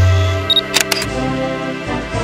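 Camera sound effect over intro music: a short high autofocus beep about half a second in, followed at once by a quick burst of shutter clicks, as a deep bass tone fades out.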